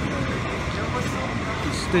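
Steady low mechanical hum of a running vehicle engine with street noise, with no distinct knocks or changes.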